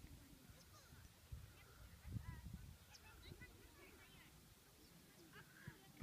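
Near silence outdoors: a faint low rumble with a few faint, far-off calls or shouts.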